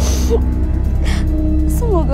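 A woman sobbing, with three short gasping breaths and a falling whimper at the end, over a steady, low dramatic music score.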